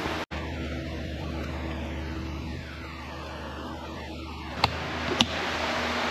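Steady low hum and hiss of room background noise, cut off for an instant just after the start, with two sharp clicks about half a second apart near the end.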